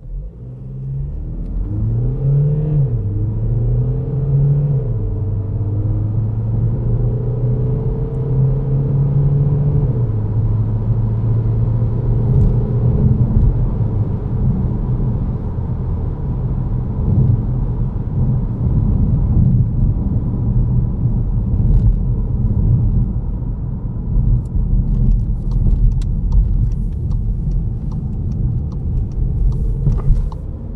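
Škoda Karoq 2.0 TDI four-cylinder diesel accelerating hard, heard from inside the cabin. The engine note climbs and drops back with each of three upshifts in the first ten seconds, then settles into a steady drone with road rumble.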